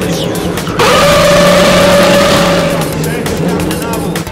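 A race car driven hard: a loud, steady high-pitched note over a hiss sets in suddenly about a second in, holds for about two seconds, then fades.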